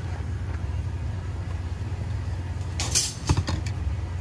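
Steady low hum of commercial kitchen equipment, with a short cluster of light clicks and knocks about three seconds in.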